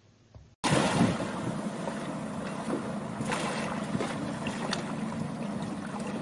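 Sea water washing and wind on the microphone: a steady rushing noise that starts abruptly about half a second in, after a brief near-silence.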